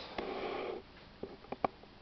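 A short breath through the nose, followed by a few faint clicks.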